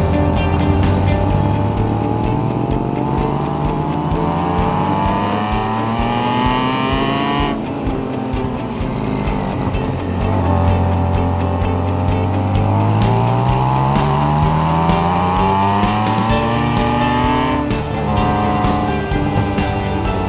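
BMW K1600 GTL's inline-six engine accelerating, its pitch rising steadily for several seconds, cutting off abruptly a little past a third of the way through, then climbing again until near the end. Background music with a steady beat runs underneath.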